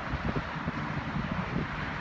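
Wind blowing on a handheld phone's microphone: a steady rush with irregular low buffeting.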